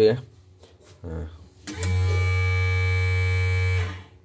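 Electric motor of a bobbin winder starts about two seconds in, runs with a steady hum and whine, then cuts off by itself just before the end: the automatic stop when the bobbin is full.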